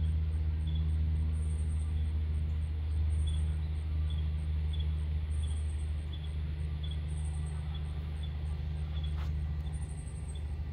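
A steady low engine hum that holds even throughout, with faint high-pitched chirps repeating about three times a second above it.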